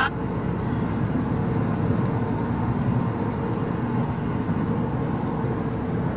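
Steady low road and engine noise inside a moving Acura's cabin, with a faint steady hum.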